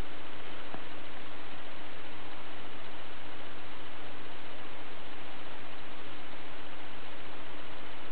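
A steady, even hiss with a faint steady hum underneath, unchanging throughout.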